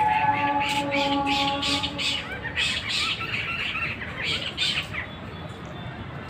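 Birds calling in a rapid series of short, harsh squawks that thin out after about five seconds.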